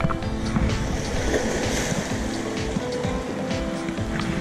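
A wave washing in over the shore boulders, swelling about a second in and easing off by about three seconds, heard under steady background music. The angler puts these sudden stronger waves down to passing ships.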